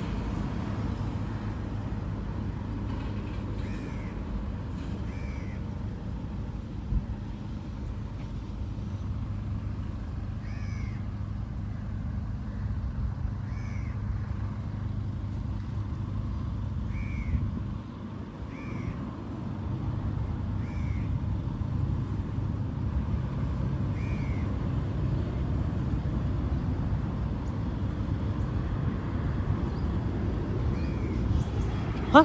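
A bird calling repeatedly, with short arched notes a second or a few seconds apart, over a steady low rumble that swells a little in the second half.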